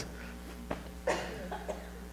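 A single short cough about a second in, over a steady low electrical hum.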